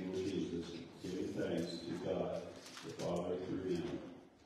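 Speech only: a man reading aloud in a low, slow voice, in phrases with short pauses about a second in and again near three seconds in.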